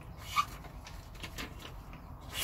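A D2 steel knife blade slicing through a sheet of paper held in the air: short, faint rasping cuts with a sharp tick a little way in. The blade is sharp out of the box and cuts the paper cleanly.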